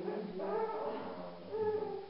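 A woman in labour moaning with effort, in two drawn-out pitched moans, the second starting about a second and a half in.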